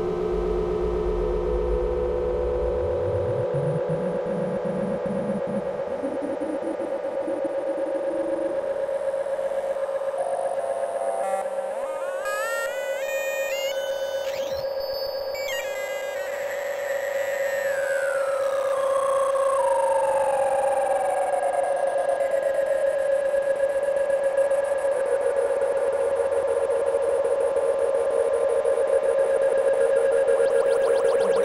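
Eurorack modular synthesizer playing a live ambient/glitch piece: a steady drone throughout, with a low rumble that fades out in the first few seconds. About halfway through come a few seconds of stepped, jumping glitchy tones, followed by a long falling pitch glide.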